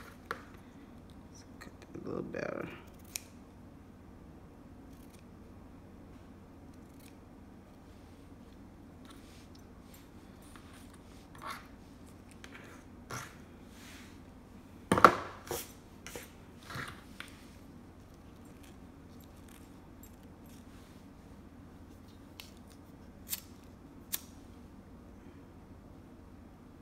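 Sparse handling sounds from working satin ribbon with scissors: a few short snips and rustles, with a knock about halfway through, the loudest sound, as something is set down on the table. Near the end come two sharp clicks of a disposable lighter being struck.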